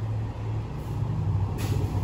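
A motor vehicle's engine running, a steady low hum, with a short hiss about a second and a half in.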